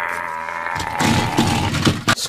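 Large plastic toy monster truck rolled hard across a concrete floor. Its big rubber tyres rumble and clatter from about a second in, and it knocks into another toy truck.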